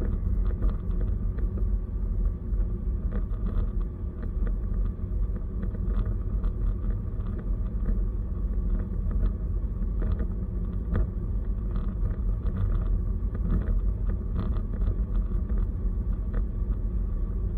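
A car driving at highway speed: a steady low rumble of road and engine noise, with scattered faint clicks throughout.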